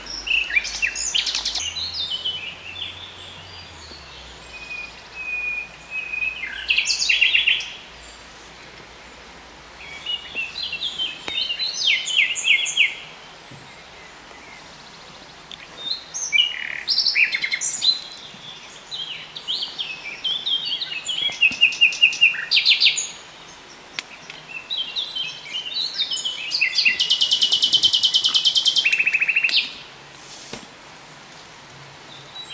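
A songbird singing loud, varied high-pitched phrases of a few seconds each, with short pauses between them; near the end a long, rapid trill.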